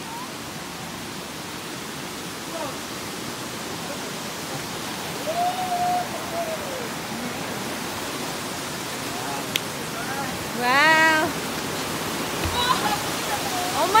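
Steady rushing of a waterfall and stream, growing gradually louder, with people's voices calling out over it; the loudest is one rising call about eleven seconds in.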